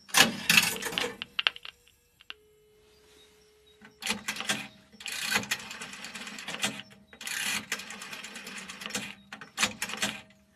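Telephone in a phone booth being used. There is a loud clunk and rattle of handling at the start, then a short steady dial tone about two seconds in. From about four seconds on come long stretches of rapid mechanical clicking and clattering as a number is dialed.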